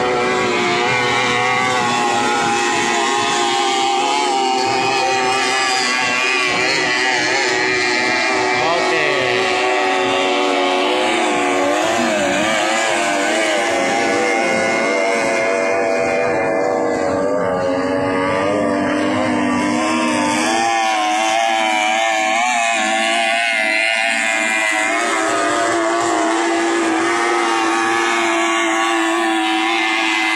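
Several 30 hp three-cylinder racing outboard motors running at high revs, their whining pitches wavering and shifting as the boats pass.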